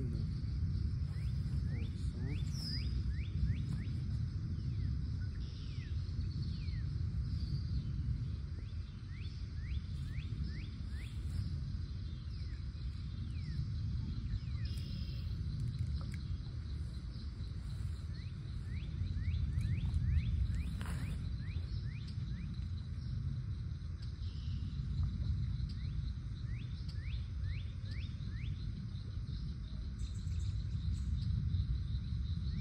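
Red-winged blackbirds calling, many short falling chirps in scattered clusters, over a steady low rumble of wind on the microphone.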